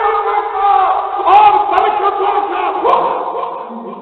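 A man's voice through a microphone, chanting in long drawn-out melodic phrases rather than speaking, fading a little near the end.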